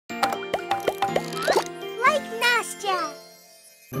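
Short children's-channel intro jingle: bright children's music with a quick run of plopping pops in the first second and a half, then a few sliding, bending voice-like notes, fading out a little after three seconds.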